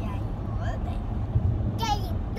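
Steady low road rumble inside a moving car's cabin, with a child's high-pitched voice briefly about half a second in and again near the end.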